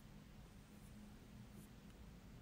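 Near silence: a faint steady hum, with a couple of faint soft rubs of a fingertip working highlighter into the skin of the back of a hand.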